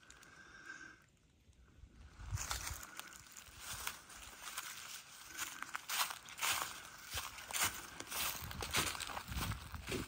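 Footsteps crunching through dry fallen leaves on a forest trail at a steady walking pace. They follow a brief near-silent gap about a second in.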